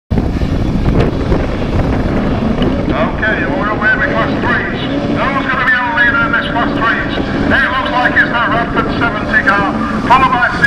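Several autograss saloon racing cars' engines running hard as they accelerate off the start and race across a grass and dirt track, with wind buffeting the microphone.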